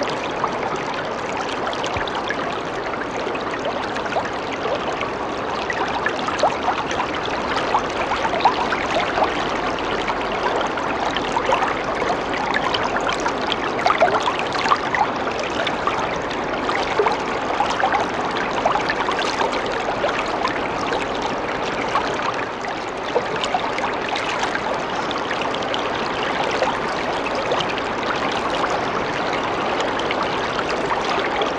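Water trickling steadily, a continuous running-water sound with many small splashy flecks throughout.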